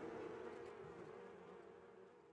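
Honeybees buzzing faintly around their hives, a steady hum that fades away.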